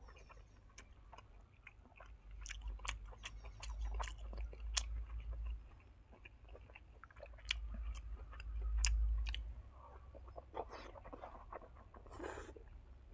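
Close-miked chewing of braised pork: wet, smacking mouth clicks as the food is worked, with a low rumble under it in two stretches.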